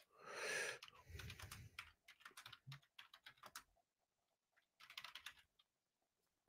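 Faint typing on a computer keyboard: a quick run of key clicks for about three seconds, then a pause and a few more keystrokes near the end. A soft breathy sound comes just before the typing starts.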